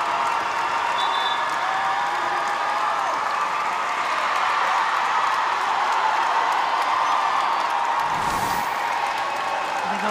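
Football stadium crowd cheering and applauding a goal, a steady roar of many voices with some wavering chant-like tones. A brief rush of noise comes about eight seconds in.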